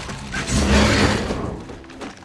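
Film soundtrack: music with a heavy, deep impact that swells about half a second in and fades away by the end.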